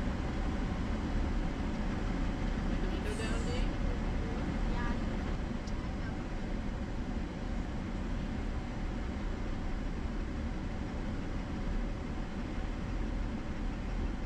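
Steady rumble of a Chevrolet Silverado pickup driving slowly on an unpaved road, heard from inside the cab: engine and tyre noise on the dirt and gravel surface.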